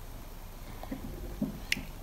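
Quiet room with two faint, brief vocal murmurs about a second in, then a single sharp click shortly before speech resumes.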